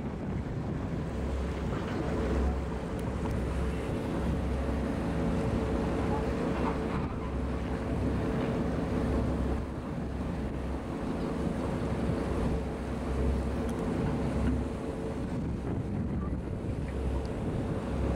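Tour boat's engine running steadily under wind on the microphone and water rushing past the hull.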